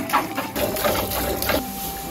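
A cow being milked by hand: streams of milk squirting in repeated strokes into a pail.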